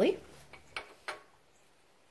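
A few light metal clicks as the toothed cam pulley is handled and set onto the camshaft of a VW ABA 2.0 engine.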